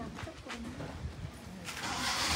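A bird calling in a few low, faint notes. Near the end comes a rustle of leaves as a fruiting branch is taken hold of by hand.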